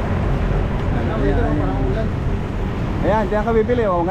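Street noise: a steady low rumble of vehicle traffic under people talking, the voices growing louder near the end.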